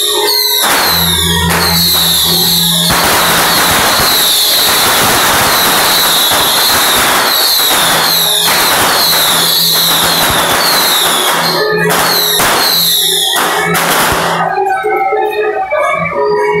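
A long string of firecrackers going off in rapid crackling bursts over music. The crackle is densest from about three seconds in to about twelve, then thins out.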